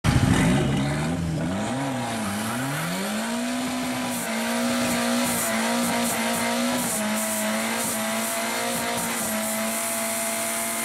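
Turbocharged Cosworth YB four-cylinder engine in a Mk1 Ford Escort revving up and down for the first few seconds. From about three seconds in it is held at a steady high pitch as the rear tyres spin in a smoky burnout, with tyre noise underneath.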